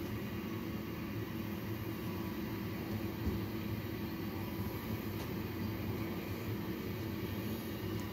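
Steady hum with an even hiss from a neonatal incubator and the premature baby's breathing equipment.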